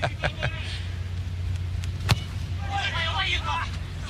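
A soccer ball is kicked for a corner, a single sharp thud about halfway through, over a steady low background hum. Faint voices call out just after the kick.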